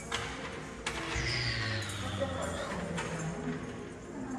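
Jazz background music playing from a hallway ceiling speaker, heard faintly over room noise.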